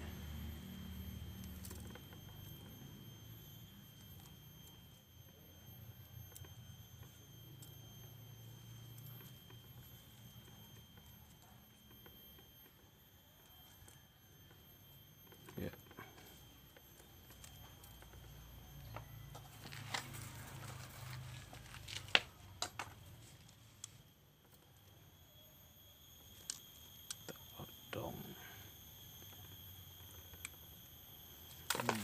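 Faint handling noises of bonsai training wire being wound around a ficus bonsai trunk, with soft rustles and a few sharp clicks; the loudest click comes a little after the middle. A faint steady high-pitched whine and a low hum sit underneath throughout.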